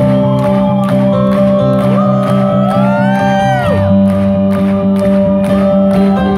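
Live rock band playing through a hall PA: electric guitar, bass and drums with a steady beat under sustained chords. About halfway through, a singing voice glides up and then falls away.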